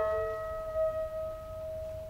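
Solo alto saxophone holding one long note that slowly fades.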